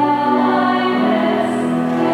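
Church singing with long held notes, the sung responsorial psalm that follows the first reading at Mass.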